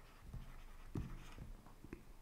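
Faint stylus strokes on a tablet screen: a few soft taps and short scratches as the words "B only" are handwritten.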